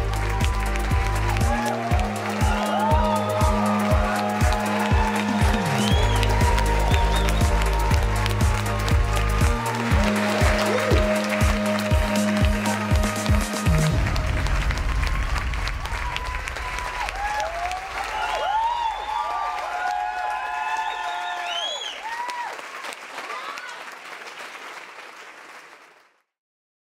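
Music with a steady beat and a repeating bass line, which stops about halfway through. Applause and voices carry on over it and fade out at the end.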